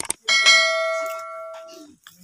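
Subscribe-button sound effect: a mouse click, then a single bell ding that rings and dies away over about a second and a half.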